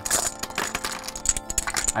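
A box of dominoes rattling as it is handled: a rapid, irregular jumble of small clicks as the tiles knock against each other and the box.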